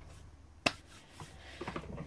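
A single sharp click about two-thirds of a second in, over faint steady room hum.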